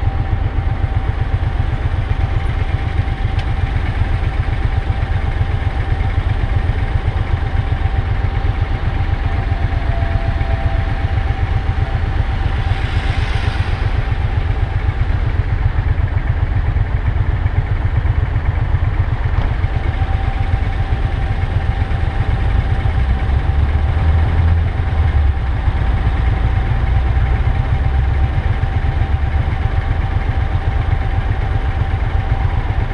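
Motorcycle engine idling at a standstill, a steady low rumble that grows louder in the last few seconds, with a thin steady whine over it. A brief rushing swell passes about halfway through.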